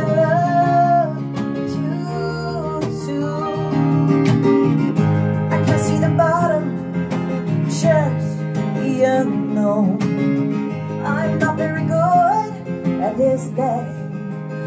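A slow song played live on strummed acoustic guitar and digital piano, with a voice singing a melody over the chords.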